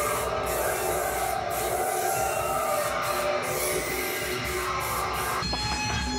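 A steady, rushing noise with faint held tones underneath. Near the end it changes abruptly and plucked guitar music comes in.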